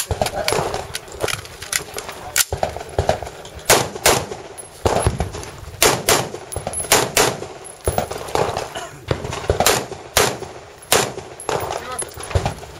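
AR-style rifle firing a string of shots, many in quick pairs, with about a second between pairs, each shot echoing briefly.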